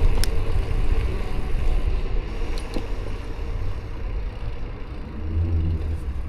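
Steady low rumble of wind on an action camera's microphone and tyre noise from a gravel bike being ridden, with a few light clicks. A low hum swells near the end.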